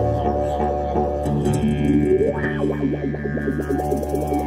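Didgeridoo drone played together with acoustic guitar by one musician. The drone shifts pitch about a second in, a rising whoop sweeps up through the drone about two seconds in, and a run of quick guitar strums follows.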